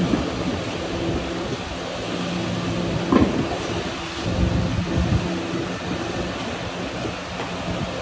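Steady low machine hum of a car service workshop, with a sharp knock about three seconds in and a few low thuds soon after, from a mechanic handling a road wheel at the hub of a car on a lift.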